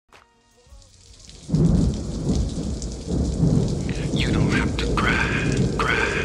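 Thunder rumbling over steady rain, a storm sound effect opening a slow R&B track. It comes in suddenly about a second and a half in, and faint pitched sounds enter over it from about four seconds in.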